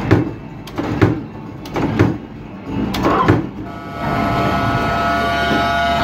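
Arcade ball-game machine: four sharp thumps about a second apart, then a steady electronic tone from the machine starting about four seconds in.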